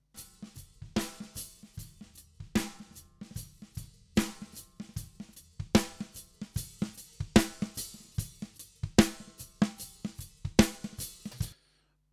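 Programmed kick and snare drum loop played back in a steady beat, a strong hit about every 0.8 s with lighter hits between. The snare runs through Steinberg's EnvelopeShaper plugin, which is reshaping the attack of each snare hit.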